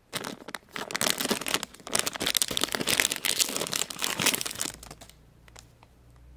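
Foil blind-bag pouch crinkling and tearing as it is pulled open by hand, a dense rustle that stops about five seconds in.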